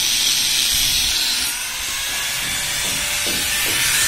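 A steady, loud, high hiss, like air or spray escaping under pressure, that drops back about a second and a half in.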